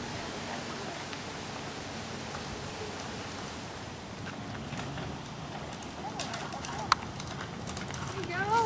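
Child's bicycle with training wheels rolling over rough pavement, a steady gritty rolling noise, with footsteps in flip-flops walking alongside and a sharp click near the end.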